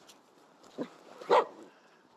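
A Finnish Spitz giving two short barks, a small one a little under a second in and a much louder one just after.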